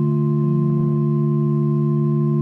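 A steady, held instrumental chord sounding on its own, the drone accompaniment to chanted psalmody, with no change in pitch.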